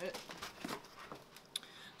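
Faint handling noises of a plastic laptop cooling pad being moved on a table, with a few light clicks, one sharper near the end.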